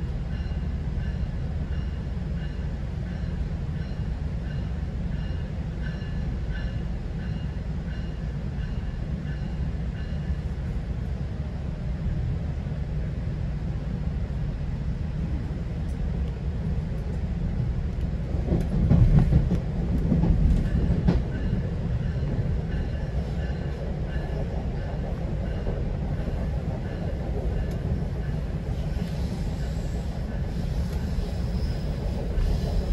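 Steady low rumble of a GO Transit bi-level passenger coach running along the track, heard from inside the car. A faint steady whine sits above it in the first third. A louder rumble and clatter comes about two-thirds of the way through.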